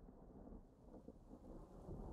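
Faint low rumble with a rain-like hiss, like a thunder sound effect, growing louder as the remix fades in.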